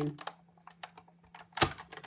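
Sizzix Big Shot die-cutting machine being hand-cranked, the platform and cutting plates rolling back through the rollers: a run of light clicks, then a sharper knock about one and a half seconds in.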